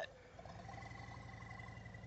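Faint, steady low hum of a distant motorcycle engine turning over slowly, with a thin steady high tone above it.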